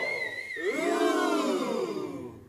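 A long, drawn-out vocal 'Ohhh' in two sustained swells, with a thin, high, wavering whistle-like tone above the first swell.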